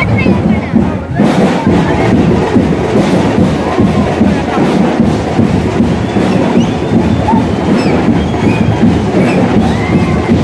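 Loud procession music, heavy with percussion, with a dancing crowd shouting and whistling over it.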